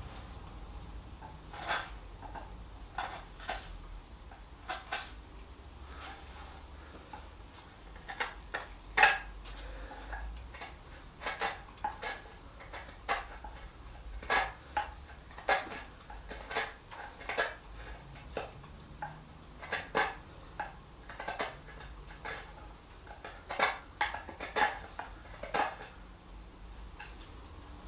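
An irregular series of light clicks and clinks from small hard objects, one or two a second. The loudest comes about nine seconds in.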